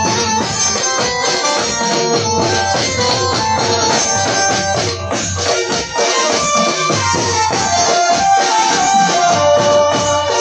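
Live Gujarati garba band playing an instrumental passage: an electronic keyboard melody over a steady dhol drum beat, amplified through stage speakers.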